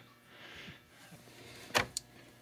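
Low hiss, then a single short sharp click near the end followed by a smaller tick: handling of the small plastic clip on the analyzer's cable-actuated power switch.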